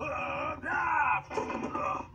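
A cartoonish character voice yelling and groaning in sustained, wordless cries with short breaks, played back from a screen's speaker.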